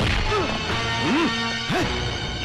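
Film fight soundtrack: dubbed punch and smash sound effects over dramatic background music, with one hit at the very start and another near the end.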